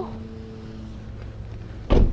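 A low, steady background hum, then one short, sharp thump near the end.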